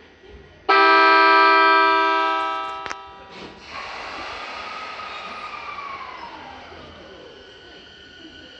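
Rinkai Line 70-000 series train sounding its horn: one loud blast of about two seconds that tails off and stops abruptly. Then the train pulls out, its running noise rising, with a whine that climbs slightly and then falls in pitch as it moves off.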